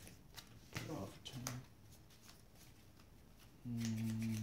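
Trading cards being handled on a playmat: scattered light clicks and slides as cards are picked up and set down. A brief low hum near the end is the loudest sound.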